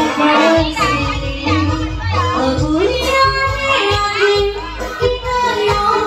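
A woman singing an Indonesian-language pop song into a microphone, amplified through a PA over live electronic-keyboard accompaniment with a recurring bass beat.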